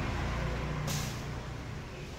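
A low steady engine rumble from a motor vehicle, stronger in the first second. A short hiss comes about a second in.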